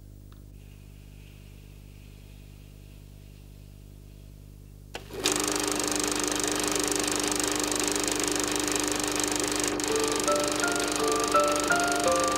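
A reel film projector starts up about five seconds in and runs with a steady, dense mechanical rattle. From about ten seconds in, a light tinkling keyboard melody of short stepping notes plays over it.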